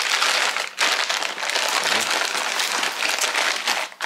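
Clear plastic bags crinkling and rustling continuously as they are pushed by hand into a fabric tool bag.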